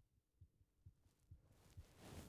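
Near silence, with faint, regular low thumps about twice a second.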